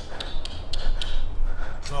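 A short run of sharp taps, about four a second, then one more near the end, over a steady low rumble.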